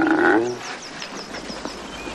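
A grizzly bear giving a long, steady moaning call that ends about half a second in, followed by a series of faint, high chirps.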